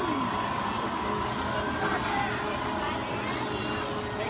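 Amusement park ambience: a children's helicopter ride running with a steady mechanical hum, with scattered voices of people around it.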